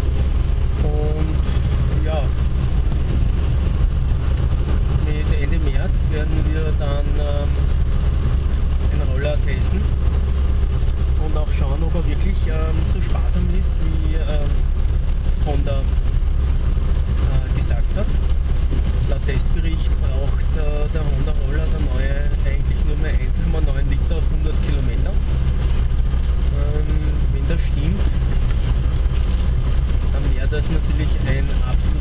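Steady low rumble of a car's engine and tyres on a wet road, heard from inside the cabin, with indistinct talking over it.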